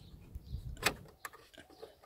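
A few light clicks of metal and plastic as the door-handle release cable is worked free of the Ford FG Falcon's door latch mechanism, the sharpest a little under a second in.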